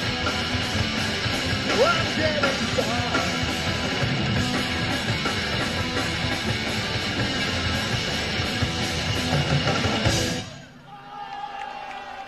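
Punk rock band playing live with electric guitars and drums. The song stops abruptly about ten seconds in.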